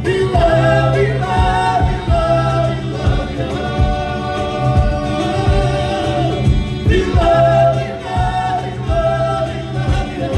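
Georgian folk vocal ensemble singing in several-part harmony over a held low bass note, with a regular low beat underneath.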